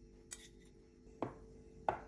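Three light clicks of a metal spoon and glass dessert bowls knocking together while shredded kunafa dough is spooned onto the bowls, the last two louder.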